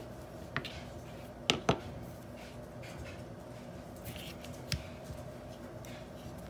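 Hands pressing and kneading fondant on a plastic cutting mat: soft handling noise with a few light sharp clicks, two of them close together about a second and a half in, over a steady low hum.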